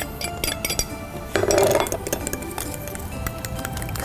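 A metal fork clinking and scraping against a small bowl and plastic tray as powdered sugar goes in and the orange-juice-and-oil dressing is stirred: a run of quick, irregular clinks over background music.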